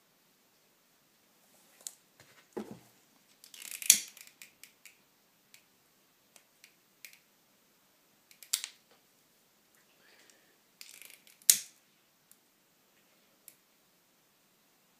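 A hand-held lighter being struck over and over to light an oil-soaked wick: short scratchy rasps each ending in a sharp click, the loudest about 4, 8.5 and 11.5 seconds in, with lighter clicks between. A duller knock comes about two and a half seconds in.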